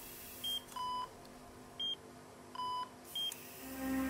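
Hospital bedside monitor beeping: three short high beeps about a second and a half apart, with two longer, lower tones between them. Music fades in near the end.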